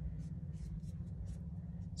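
Paintbrush bristles making several faint, short, scratchy strokes of paint on canvas paper, over a steady low hum.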